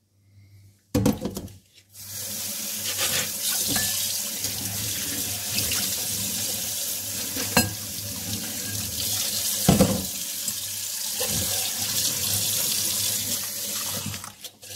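Kitchen tap running into a stainless-steel sink, the water splashing over a cut-crystal bowl as it is rinsed. The water comes on about two seconds in and then runs steadily. A few knocks come just before it, and two single sharp clinks come later.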